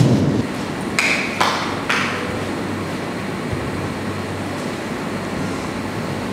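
A low thump, then three short sharp knocks within the next two seconds, the first with a brief high ring. After that, a steady even noise of a large room continues.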